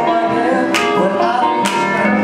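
Live band playing a song: sustained keyboard and other pitched instrument parts, with a sharp drum or cymbal hit about once a second.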